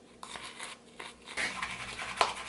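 Tint brush scraping and stirring thick hair bleach paste in a plastic mixing bowl: faint, irregular short scrapes, busier in the second half.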